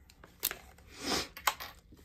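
Hands handling plastic packaging: a sharp click about half a second in, a brief rustle about a second in, and another click shortly after.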